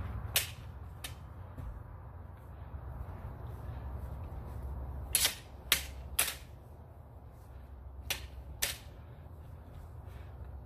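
Backswords striking each other in a sparring bout: about seven sharp clacks in quick clusters, two near the start, three together around the middle, two more near the end, over a steady low hum.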